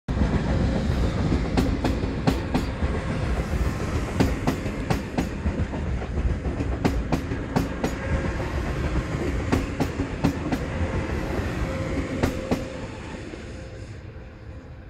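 An ICE-T electric multiple unit passing close at low speed: a loud rolling rumble with a steady hum, and a string of sharp wheel clicks as the wheelsets cross rail joints and points. It fades over the last second or so as the tail end moves away.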